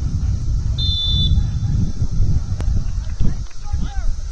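Wind rumbling on the microphone, with one short, high referee's whistle blast about a second in and a single sharp click a little past the middle.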